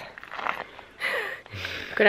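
A person's faint voice in a few brief, low-level sounds, one falling in pitch, just before speech begins.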